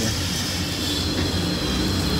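A screwdriver scraping compacted chain grease and road dirt out of a motorcycle's plastic front-sprocket cover. It plays over a steady low background rumble that is the loudest thing heard.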